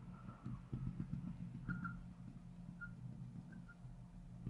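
Marker drawing a dashed line on a glass lightboard: faint, irregular taps with a few short squeaks spread across the seconds, over a steady low room hum.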